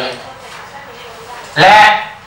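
Speech only: the end of a spoken word, a pause of about a second and a half, then one short, higher-pitched spoken word near the end.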